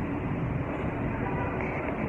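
Steady street noise, an even rumble with no distinct events.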